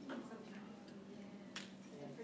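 A single sharp click about one and a half seconds in, over a steady low hum and a faint murmur of voices in the room.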